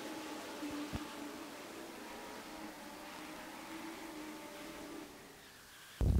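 Faint, steady hum of Legends race cars' engines running on the track, with a single click about a second in. The hum fades near the end.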